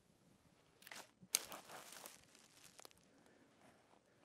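Footsteps crunching and rustling through dry leaves and brush, in a short spell of about two seconds with one sharper crack near the start.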